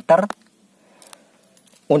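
Faint jingling and small clinks of a bunch of car keys on a ring being handled, in the gap between a man's speech at the start and end.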